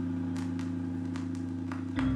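A low chord held steadily in slow instrumental music, with faint scattered clicks above it; a new chord comes in right at the end.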